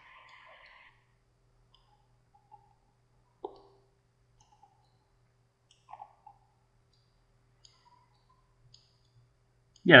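A few faint, sharp computer-mouse clicks over near silence and a faint low hum, the clearest about three and a half and six seconds in.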